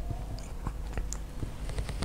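A few faint, scattered clicks and ticks, about seven in two seconds, over a low steady hum.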